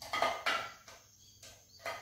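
A spoon scraping the inside of a small saucepan in a few short strokes, about four in two seconds, as thick hot starch paste is scraped out into a bowl.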